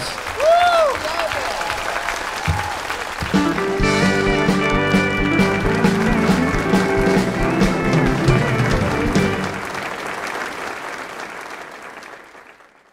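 Audience applauding in a theatre. About three seconds in, music with guitar comes in over the applause, then fades away near the end.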